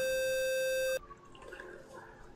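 Livestream subscriber alert sound: a single buzzy electronic tone held steady for about a second, then cutting off suddenly.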